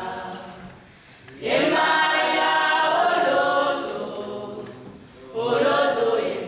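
A group of voices singing a chant without instruments, in phrases with short breaks: one phrase fades out in the first second, a loud phrase runs from about a second and a half in, and the next begins near the end.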